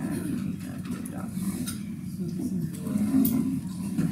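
Indistinct, low murmuring voices in a room, with no clear words.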